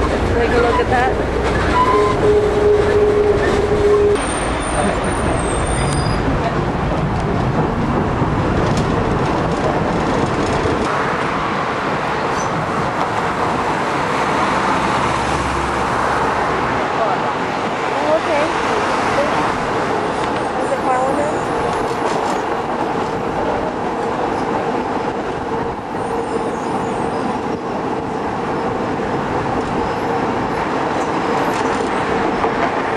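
Running noise of a moving city transit vehicle heard from inside the passenger cabin, a steady rumble and rattle, with a short held tone about two seconds in and passengers' voices in the background.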